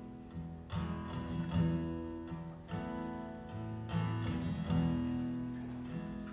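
Acoustic guitar strumming slow chords that ring out, a new chord about every second.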